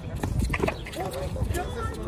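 A roundnet (Spikeball) rally: a few sharp knocks of hands striking the small ball in the first second, with people's voices calling out from about a second in.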